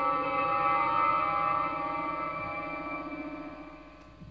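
Star Trek transporter-beam sound effect: a shimmering, chime-like chord of several held tones with a fast warble, fading away over the last couple of seconds.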